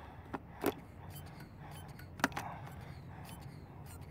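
A few short, sharp clicks from handling a Mityvac hand vacuum pump and its gauge on an engine-mount vacuum hose, the loudest a little past two seconds in, over faint low background noise.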